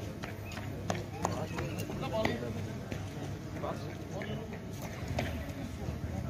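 Indistinct voices of people standing by, with a runner's footsteps slapping on asphalt as he jogs past, heard as a few irregular sharp taps.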